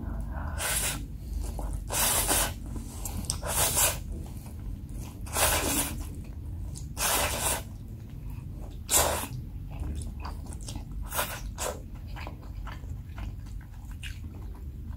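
Close-miked slurping of black-bean sauce instant noodles (jjajang ramyeon): about seven loud, wet slurps spread through the stretch, with softer chewing and mouth clicks between them.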